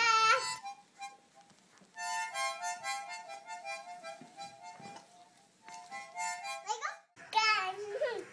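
A child blowing short, wavering chords on a harmonica, in two runs with a brief break between them. A toddler's loud, high-pitched shout ends about half a second in, and another starts near the end.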